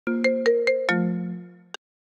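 iPhone ringtone for an incoming FaceTime call: five quick plucked-sounding notes about a fifth of a second apart, the last ringing out and fading over about a second. A single short click follows near the end.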